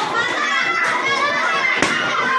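Many children shouting and chattering at once, with one sharp snap near the end.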